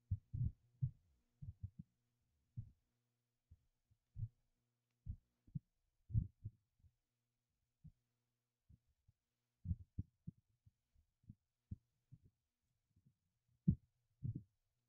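Faint, muffled computer-mouse clicks and scroll thumps, irregular at about one to three a second, over a low steady electrical hum.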